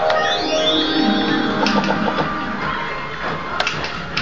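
Barcrest Rainbow Riches fruit machine playing its electronic tune of stepped notes and falling bleeps as the reels spin, with a sharp click shortly before the end.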